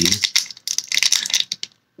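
A foil trading-card booster pack crinkling as it is gripped and handled in the fingers: a run of irregular crackles that stops suddenly just before the end.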